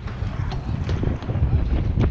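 Wind buffeting the camera's microphone: a gusty low rumble that rises and falls.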